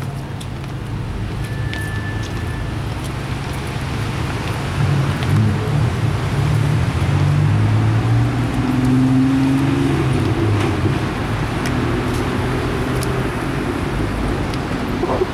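Street traffic: a motor vehicle's engine runs close by, swelling about five seconds in and easing toward the end. A brief high squeal sounds about a second and a half in.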